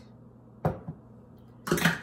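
A single sharp knock of kitchenware against a dish about half a second in, made while milk is measured and added to a bowl of brownie mix.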